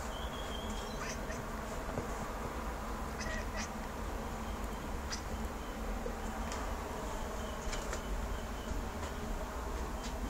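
Domestic cat chirping and chattering at birds: scattered short chirps, several seconds apart, over a steady low hum.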